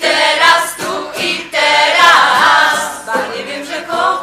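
A choir of mixed voices singing a religious pilgrimage song, in phrases with brief breaths between them.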